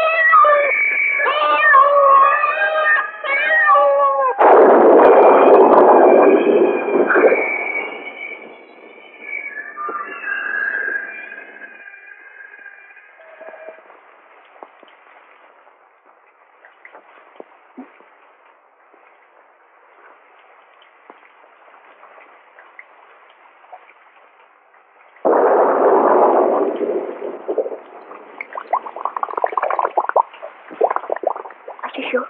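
Wavering, high yowling cries like a cat's over the first few seconds, fainter again a little later. A loud rush of noise breaks in about four seconds in and lasts about three seconds, and another comes in near the end, with only a faint hiss between them.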